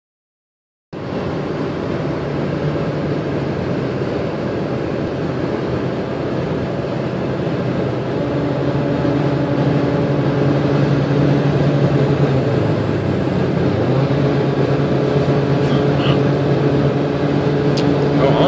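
Steady road and engine noise inside a Ford car's cabin moving at highway speed, with a low hum running through it. It starts about a second in.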